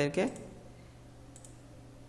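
A short spoken word, then low room tone with a single faint computer mouse click a little past halfway, as a context-menu item is chosen.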